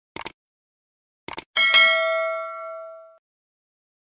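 Subscribe-button animation sound effect: two quick mouse-click sounds near the start and two more about a second later, then a bright bell ding that rings for about a second and a half and fades out.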